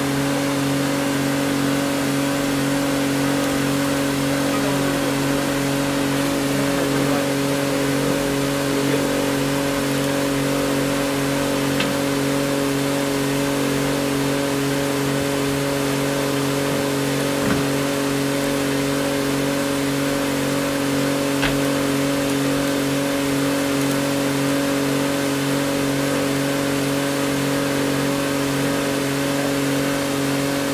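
Cleansky electric street sweeper running in place with its water spray on: a steady machine hum holding several fixed tones, over an even hiss of water spraying from the front nozzle bar and the spinning side brushes. A few faint ticks break in now and then.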